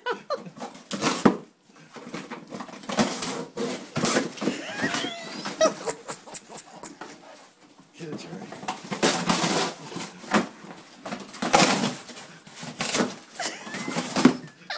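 An English Springer Spaniel ripping and crunching a cardboard box with his teeth and paws: irregular bursts of tearing and crackling cardboard with scuffling, easing off briefly about six seconds in.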